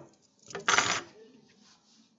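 A brief, loud clatter of handling noise close to the microphone, about half a second in, lasting around half a second.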